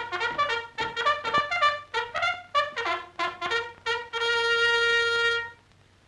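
Trumpet call in a military style on the soundtrack: a fast run of short, clipped notes, then one long held note that stops about half a second before the end.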